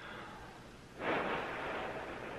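A person's breath at the rim of a cup of hot coffee: one breathy rush of air about a second in, trailing off slowly.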